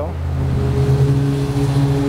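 A car engine running at idle: a steady low drone that rises slightly in pitch about half a second in, with a steady higher tone joining it soon after.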